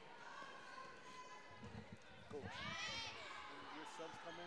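Basketball game sounds on a gym's hardwood court: a ball dribbling as a quick run of low thuds about halfway through, then sneakers squeaking in short chirps that rise and fall.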